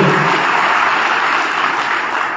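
Audience applauding, a steady wash of clapping that thins out near the end.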